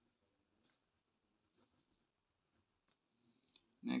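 Pen writing on paper, heard faintly as a few soft scratches and ticks.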